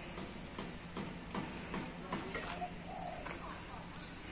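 Birds calling: a short, high chirp repeated about every second and a half, with a few lower notes in between and some faint clicks.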